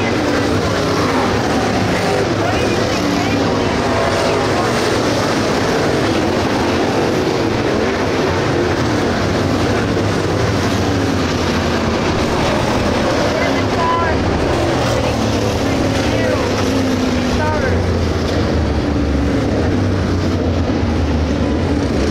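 Several 602 crate dirt late model V8 engines running around a dirt oval, their pitch rising and falling as cars pass and swell under throttle on and off the corners.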